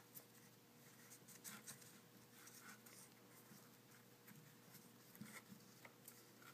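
Faint rustling and light scraping of 550 paracord strands being braided by hand, the cord brushing against fingers and paper, with scattered small ticks.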